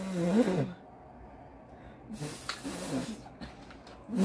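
A person's wordless vocal sounds reacting to the taste of a jelly bean being chewed. A held note bends up and down near the start, then a few fainter short sounds come with a small click in the middle.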